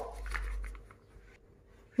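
Faint low hum with a few light ticks for under a second, then the sound cuts out to dead silence.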